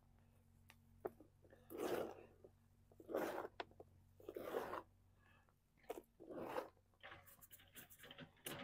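Hands scrabbling through loose, damp compost, in about five short crunchy scrapes and rustles roughly a second apart, with a few light clicks between them.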